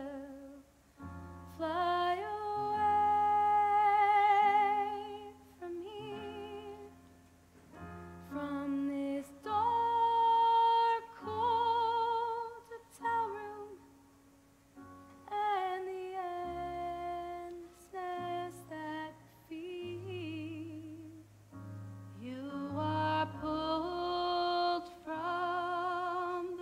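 A woman singing a slow ballad live, holding long notes with a wide vibrato over a soft sustained accompaniment.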